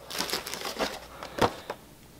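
Packaging rustling and crinkling as a boxed vinyl figure is lifted out of a cardboard box, with a few small clicks, the sharpest about one and a half seconds in.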